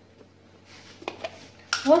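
A few light clicks of a spoon against a glass mixing bowl about a second in.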